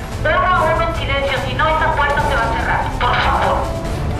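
A crowd of protesters shouting and chanting, many voices loud and overlapping.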